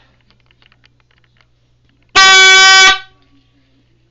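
Boyd Bucking Bulls portable rodeo buzzer: the horn inside its case gives one pretty loud, steady blast of just under a second, about two seconds in, as its internal timer runs out. This is the signal that marks the end of a timed bull or roughstock ride.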